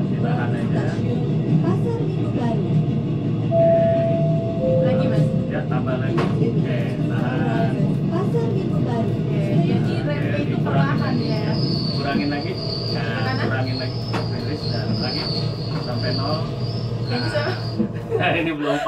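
Simulated electric commuter train (KRL) running sound as the train brakes into a station: a steady low rumble, with a high steady squeal over the last seven seconds or so as it slows. Two short tones, the second lower than the first, sound a few seconds in.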